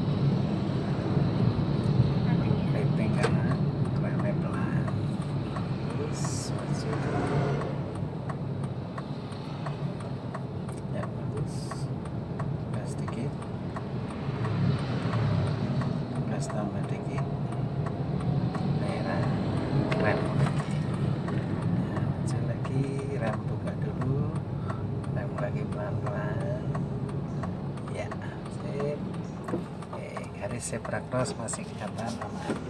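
Steady low engine and road hum inside an automatic car's cabin while it drives along a town street, with faint voices at times.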